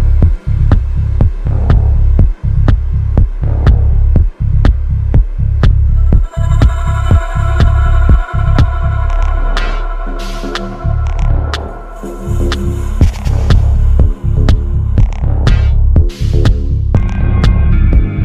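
Minimal techno mix: a steady kick drum over deep, throbbing bass. Sustained synth chords come in partway through, and the kick and bass drop out for a short breakdown in the middle before the beat comes back in.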